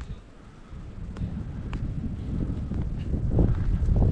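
Wind buffeting the camera microphone: an uneven low rumble that grows louder through the second half.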